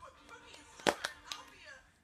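A sharp snap about a second in, followed by a couple of lighter clicks, as a Kinder Surprise egg is handled to be opened.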